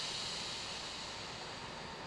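Steady hiss of compressed air being released from a stationary Class 170 Turbostar diesel unit, loudest at first and easing slightly, over a faint low hum.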